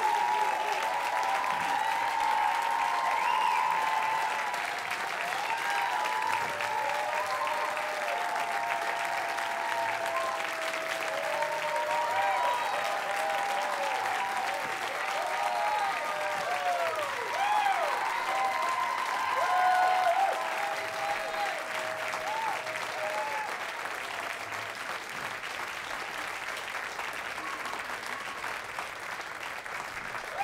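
A concert audience applauding and cheering, with many rising-and-falling whoops over the clapping. It eases off a little toward the end.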